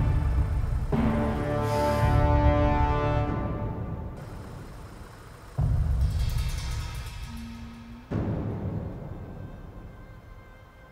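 Tense, dark film soundtrack music built on deep drum hits: a new hit lands every few seconds, at the start, about halfway and near the end, and each dies away slowly under held tones.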